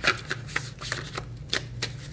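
A tarot deck being shuffled by hand: a quick, irregular run of soft card-on-card slaps and swishes.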